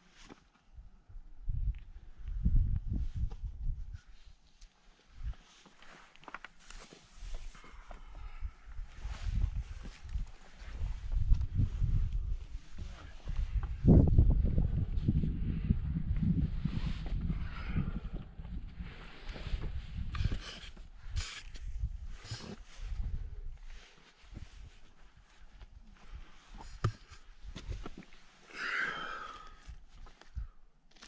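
Wind and handling noise on a head-mounted action camera's microphone, in irregular low gusts that are strongest around the middle, with scuffs and scrapes of hands and shoes on rock as the climber scrambles up.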